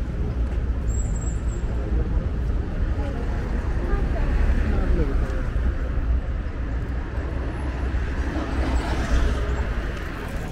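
Street ambience beside a busy road: a steady low rumble of passing car traffic, with passersby talking nearby.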